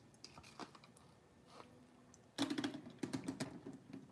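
Acrylic-paint-soaked water gel beads dropped onto paper in a box. They land in a quick flurry of small ticks and soft pats about two and a half seconds in, with faint scattered clicks before that.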